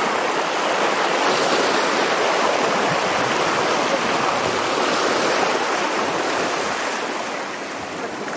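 Shallow sea water washing and lapping at the shoreline: a steady rushing hiss of small surf that swells in the first second and eases slightly near the end.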